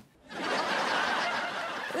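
Group laughter from a sitcom laugh track. It comes in about a third of a second in and stays even.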